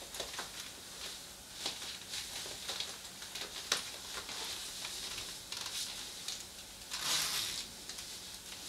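Rustling of a wet-look faux leather catsuit as the wearer turns and moves in it, with scattered small ticks. The rustle is louder near the end.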